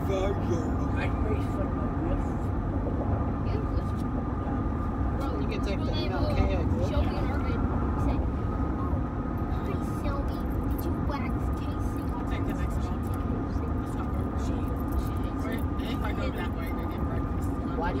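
Steady low rumble of a car's cabin on the move, with muffled voices coming and going over it.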